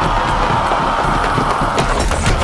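A group of men yelling together as they charge, over film score music.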